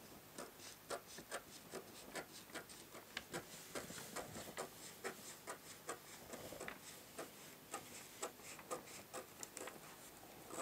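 Scissors cutting paper pattern sheet in short, quick snips, about three a second, faint, with light rubbing of the paper.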